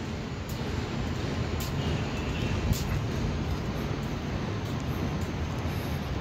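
Steady hum of road traffic from a nearby expressway, with a few faint ticks.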